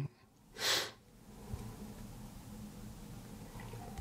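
A single short breath through the nose, about half a second in. After it only a faint steady low hum remains, with a small tick near the end.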